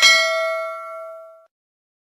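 A single metallic ding, like a struck bell, ringing for about a second and a half and then cutting off suddenly.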